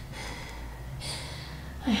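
A woman breathing hard, catching her breath with a couple of airy breaths, out of breath from hauling heavy suitcases up a flight of stairs.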